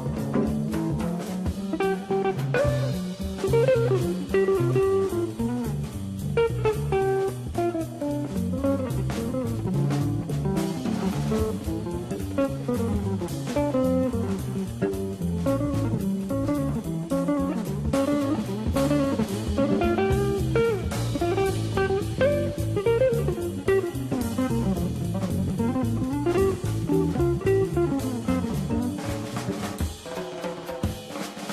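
Jazz guitar solo: an archtop hollow-body electric guitar plays continuous melodic lines over a drum kit with cymbals and a double bass.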